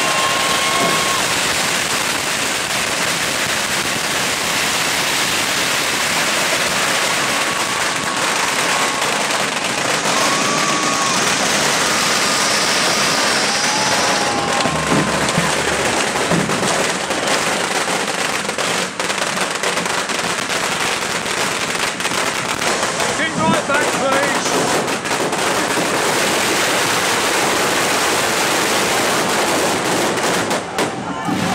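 Fireworks hissing and crackling over a crowd's voices, with scattered sharp firecracker bangs in the second half.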